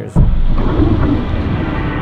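Loud wind buffeting the microphone on a boat at sea: a low rumble with a rushing, hissing noise over it that starts suddenly just after the start.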